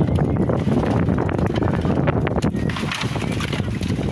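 Freshly harvested tilapia flopping and slapping against plastic crates as they are sorted by hand: a dense, irregular patter of wet slaps and knocks over a steady low rumble.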